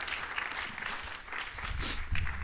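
Congregation applauding: many hands clapping in a steady patter.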